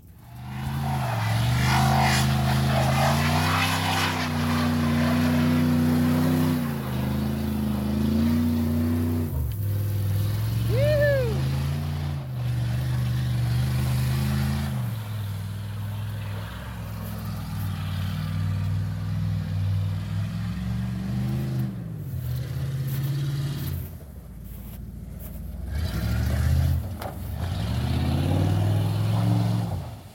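Chevy K1500 pickup's engine revving up and down again and again as the truck spins its tires in the snow. A brief high squeal comes about eleven seconds in.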